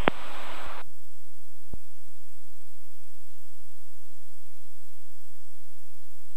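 Steady low drone of a Cirrus SR20's engine and propeller, heard from inside the cockpit at a moderate approach power setting of about 52%. A radio hiss cuts off under a second in.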